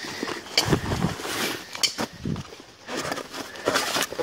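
Irregular rustling and scuffing of clothing and dry fallen leaves close to the microphone, with a few sharp knocks of handling.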